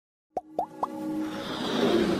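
Animated logo intro sound design: three quick popping plops, each sliding up in pitch and each higher than the one before, followed by a swelling synth build-up.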